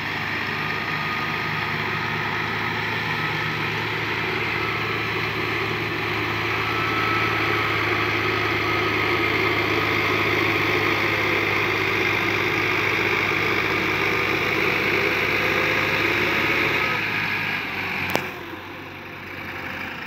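Tractor diesel engines running steadily under load as two tractors hitched together slowly tow a loaded trolley. The note holds, creeping slightly higher, then drops off about 17 seconds in, followed by a single sharp click.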